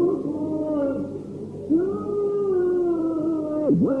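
Solo male cantor singing Byzantine chant, holding long drawn-out notes; a lull a little over a second in, then a new note swoops up and is held, and near the end the voice drops sharply in pitch and rises back. The old recording sounds muffled, with the top end cut off.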